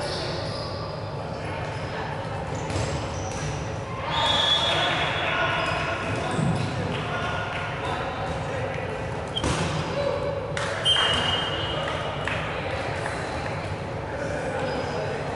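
Dodgeball players' voices in an echoing sports hall, with a few sharp thuds of rubber dodgeballs striking the floor or players, two of them close together near the ten-second mark.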